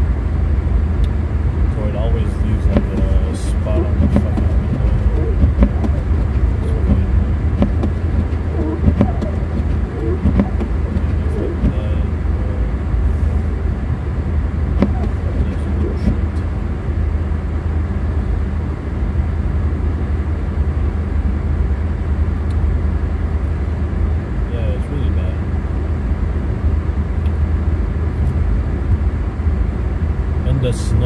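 Steady low rumble inside an Infiniti Q50 Red Sport 400 cruising on a snow-covered highway: road, tyre and wind noise mixed with the engine, with no change in speed or revs.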